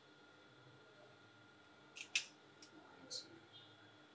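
Scissors snipping into fabric: two quick snips about two seconds in, the second the loudest, then one more about a second later, cutting a notch into the edge of the pocket piece.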